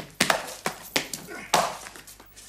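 An irregular series of about five sharp knocks over two seconds.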